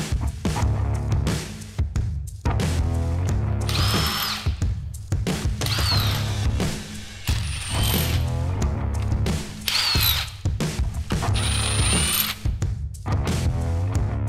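A cordless drill-driver running a socket, driving bolts on a V8 cylinder head, over background rock music.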